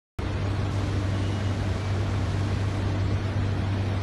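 Steady low hum under an even hiss, with no changes or distinct events.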